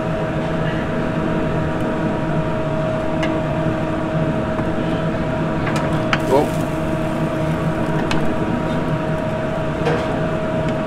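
Steady machine hum of commercial kitchen equipment, with a few light clicks around the middle.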